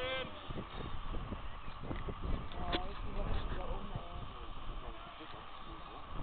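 Outdoor football match ambience: short distant shouts and calls from the players over a steady low rumble, with one shout right at the start.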